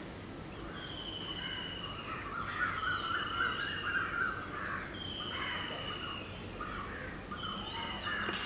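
Birds calling outdoors: a thin, level whistle repeated about every two seconds, with busier chattering calls in the middle, over a steady background hiss.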